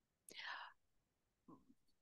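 Near silence, with one faint, short breathy sound from a person about half a second in.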